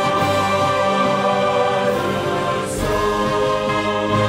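Mixed choir singing a worshipful anthem in held, sustained chords with instrumental accompaniment; the chord changes a little before three seconds in, with a deeper bass coming in.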